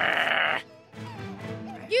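A cartoon shrew character's short, loud, bleat-like vocal noise lasting about half a second, followed by soft background music.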